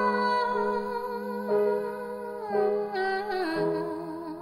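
A slow, wordless melody hummed in long held notes that change about once a second, over a steady held low accompaniment. The last note wavers in pitch.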